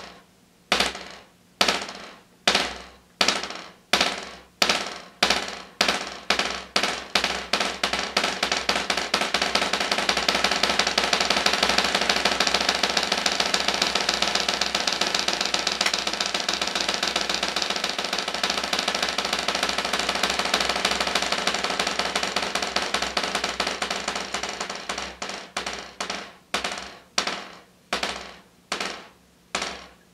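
Wooden drumsticks playing a buzz roll on a rubber practice pad set on a snare drum, each stroke pressed into the pad to make a short buzz, hands alternating. The separate buzz strokes speed up over the first several seconds into a smooth continuous roll, which slows again into separate buzzes near the end.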